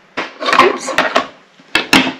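Glass globe wrapped in napkin paper being handled and set down on a turntable: rubbing and rustling for about a second, then two sharp knocks near the end as it is put down.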